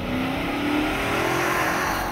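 Dodge Charger chase car driving at speed: steady engine and tyre noise, with the engine note rising slightly.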